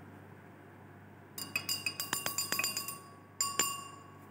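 Glass stirring rod clinking against the inside of a glass beaker as a solution is stirred: a quick run of ringing clinks, about six a second for a second and a half, a short pause, then a few more.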